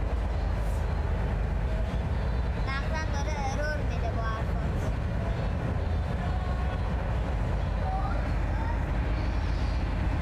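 A steady low rumble, with faint voices talking briefly in the middle and again near the end.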